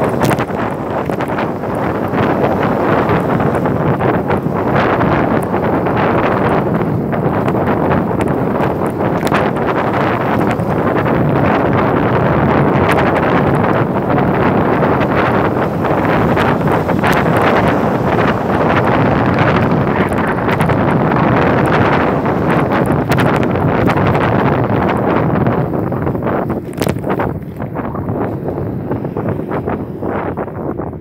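Wind buffeting the microphone of a moving camera: a loud, steady noise with scattered small clicks, easing slightly near the end.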